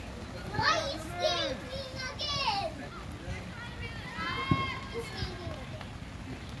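Children shouting and calling out to each other during a football game, several high voices overlapping in bursts, with one sharp thud about four and a half seconds in.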